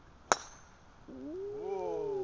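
Golf tee shot: the club head strikes the ball once, a sharp crack with a short metallic ring. About a second later a man's long, drawn-out exclamation rises and falls.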